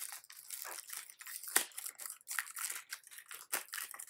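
A cardboard perfume box being opened and the bottle's clear plastic wrapping handled: a run of irregular crinkles and crackles, with one sharper snap about one and a half seconds in.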